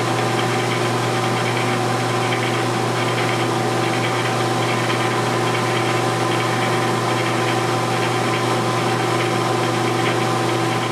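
Metal lathe running steadily at speed with an even hum and several steady whining tones, while a homemade high-speed-steel internal grooving tool cuts a shallow retaining-ring groove in a steel bore.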